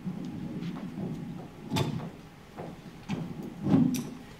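Microphone handling noise as a handheld mic is taken up at a lectern: a low rubbing rumble, then two sharp knocks about two seconds apart, the second the loudest.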